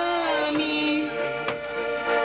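Polish folk band performing: women's voices singing long held notes over the band, with a drum struck twice, about a second apart.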